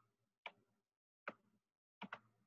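Faint, irregular clicks of a stylus tapping on a tablet screen during handwriting, two in all, about half a second in and a little past a second in, over near silence.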